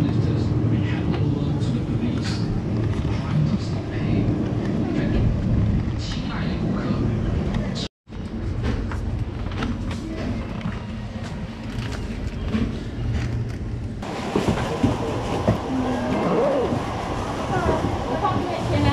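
Supermarket ambience: a steady low hum with indistinct voices and the odd click and knock of items being handled. The sound drops out briefly about eight seconds in, and from about fourteen seconds in, near the checkout, the voices and clatter are livelier.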